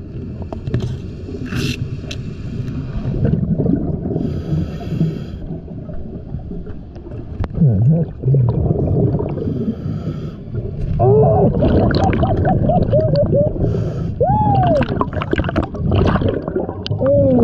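Scuba diver breathing through a regulator underwater: a hissing inhale every few seconds, with low, gurgling bubble noise from the exhales. In the last few seconds, a run of warbling tones rises and falls in pitch.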